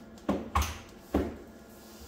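Two short clunks about a second apart as a power strip's mains plug is pushed into a wall socket.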